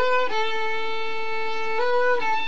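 Solo violin bowed slowly: a short note, then one long held note, then a brief step up to a higher note near the end.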